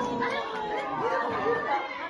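Several people talking and exclaiming over one another in excited chatter, heard as the muffled, thin-sounding audio of a played-back phone video.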